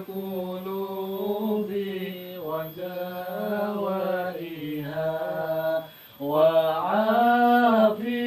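A man's voice chanting an Islamic devotional recitation in long, drawn-out melodic notes that slide slowly up and down. The chant breaks off briefly about six seconds in, then comes back louder.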